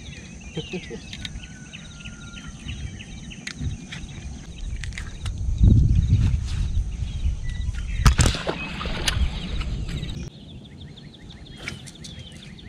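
Outdoor pond ambience: insects chirping in a quick repeating pulse and a brief bird whistle over a low rumble. The rumble swells around six seconds in, and a sharp knock comes about eight seconds in.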